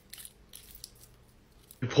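Faint crinkling of a Hershey's Kiss foil wrapper, a few short crackles in the first second as the paper flag is pulled down to peel the foil open.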